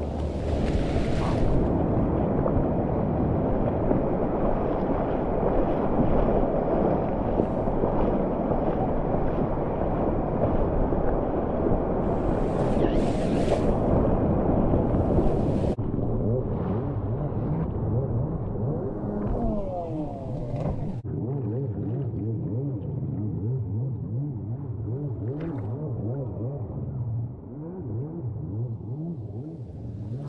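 Water sloshing and wind rushing over a waterproof action camera riding at the water's surface. About halfway through the sound turns muffled and dull, with a low hum, as the camera sits in the waves.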